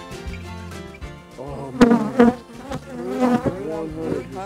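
Honey bees buzzing loudly close to the microphone from about a second and a half in, the pitch of the buzz sliding up and down as they fly past. Faint background music fades out over the first second.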